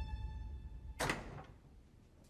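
Sustained music notes die away, then about a second in comes a single sharp knock of a wooden door being pushed open, with a short ringing tail.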